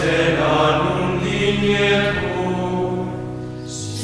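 Choral chant music: voices singing long held notes over a steady low drone, the chord changing about two seconds in.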